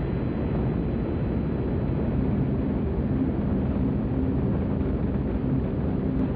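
Steady low rumble of the Saturn V rocket's five F-1 first-stage engines climbing after liftoff, heard through an old, band-limited broadcast recording.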